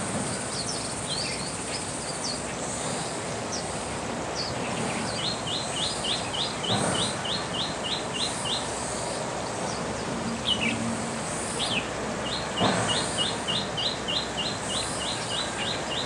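Small songbirds calling around a bathing pool: scattered high chirps, then twice a run of about a dozen evenly repeated high notes at roughly three a second. Two brief splashes sound in the middle and near the end, as birds bathe in the shallow water.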